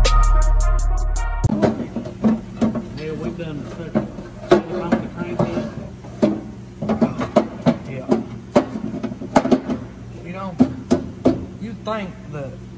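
Music for about the first second and a half, then a cut to shop sound: scattered sharp knocks and clunks as an oil pan is worked up into place under a small-block Chevy engine, with low muttered voices.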